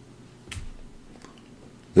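A single short, sharp click about half a second in, then a fainter tick a little later, against quiet room tone.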